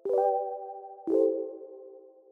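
Two soft synthesized chime notes from an intro jingle, the first at the start and the second about a second in, each ringing and slowly fading.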